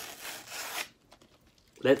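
A kraft-paper envelope being slit open with a letter opener: a rasping paper-tearing noise that stops a little under a second in.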